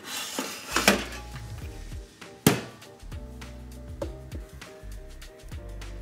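Background music with two clattering knocks as a metal baking tray is slid into a countertop oven and the oven door is shut; the sharper, louder knock comes about two and a half seconds in.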